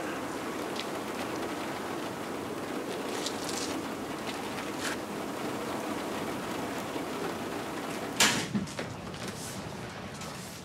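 Steady hiss of outdoor street background noise, with a few faint ticks and a sudden louder swoosh about eight seconds in.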